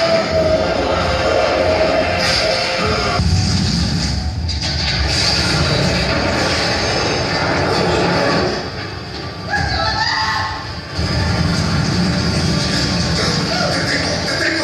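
Dramatic score music under a dense, rumbling noise bed. It dips briefly in loudness about two-thirds of the way through.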